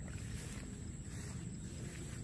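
Wind buffeting the microphone: a steady low rumble with no distinct claps or calls.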